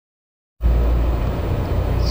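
Silence for about half a second, then a steady low hum starts abruptly and carries on.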